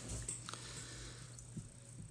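Quiet room tone with a steady low hum and a few faint small clicks, light handling noises at the fly-tying vise.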